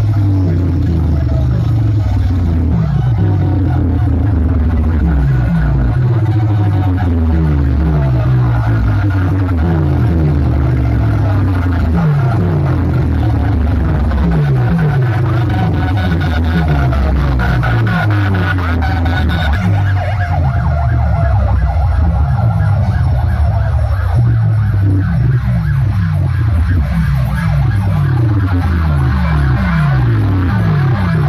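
Loud DJ music from a stacked 'box' competition sound system of amplifier racks, horn speakers and bass cabinets, with heavy bass and a rapid run of siren-like falling pitch sweeps.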